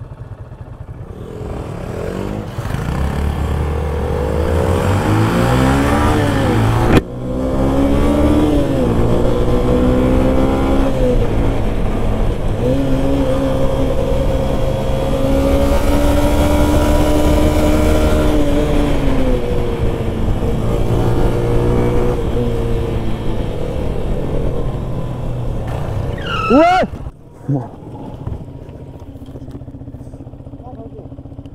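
Motorcycle engine pulling hard and rising in pitch, with a gear change about seven seconds in, then holding a steady cruise with wind noise. Near the end it eases off, gives a couple of quick throttle blips and drops to a quiet idle.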